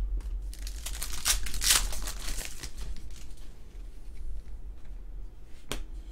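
Trading card pack's foil wrapper being torn open and crinkled: a crackling burst lasting about two seconds, starting about half a second in. A single sharp click follows near the end.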